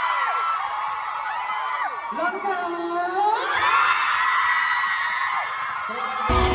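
Large arena concert crowd of fans screaming and cheering, many high voices overlapping in long rising and falling calls. The calls ease briefly about two seconds in, then swell again.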